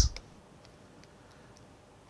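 A few faint, light ticks of a stylus tapping on a pen tablet during writing, after the tail of a spoken word at the very start.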